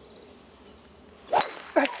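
A golf driver striking a teed-up ball: one sharp, loud crack about a second and a half in.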